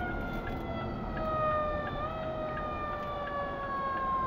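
Emergency vehicle siren heard from inside a car, a steady wail slowly falling in pitch with a small jump about halfway through, over low road noise.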